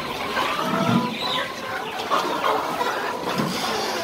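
Chickens clucking, a scatter of short calls.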